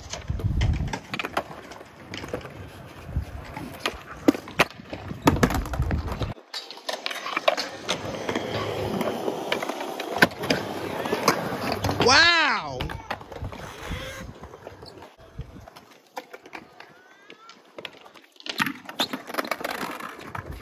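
Skateboard on a concrete skatepark: knocks and clacks of the board for the first few seconds, then urethane wheels rolling for several seconds. A voice shouts briefly about twelve seconds in.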